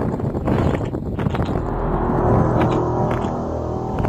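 A loud, eerie drone with many layered steady tones, like a low groaning horn, recorded under a stormy sky: the so-called 'weird sound in the sky'. It comes in about a second and a half in over rougher, noisier sound and holds steady after that.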